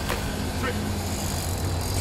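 Small motorbike engine idling steadily, a low even hum.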